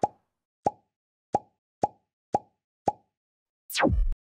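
Six short cartoon plop sound effects, like water drops, about half a second apart, followed near the end by a quick falling whoosh.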